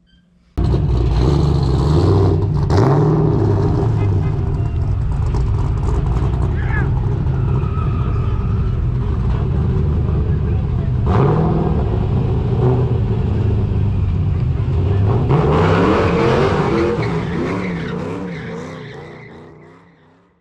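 A car engine revving, its pitch rising and falling, starting abruptly about half a second in and fading out near the end.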